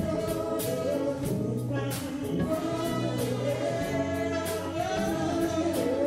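Live band playing: a woman singing the melody over a drum kit with regular cymbal strikes, electric bass, keyboard and electric guitar.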